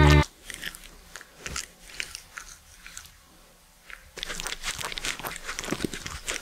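The end of a music track built from animal voices cuts off just after the start. Then come close-up mouth sounds of a cat licking: small crisp clicks and crunches, faint at first and denser and louder from about four seconds in.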